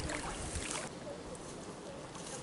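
Lake water sloshing and splashing as two people wade through it toward the bank. The splashing stops about a second in, leaving a softer steady outdoor hiss.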